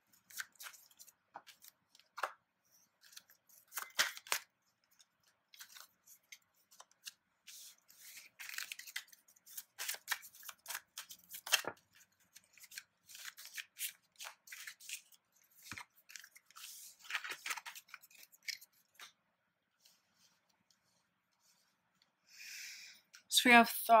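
A deck of oracle cards being handled and dealt out card by card onto a woven cloth: scattered short papery snaps and rustles of card stock, coming and going through the whole stretch.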